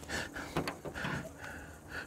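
Soft, breathy chuckling and exhalations from a man, with a few faint clicks.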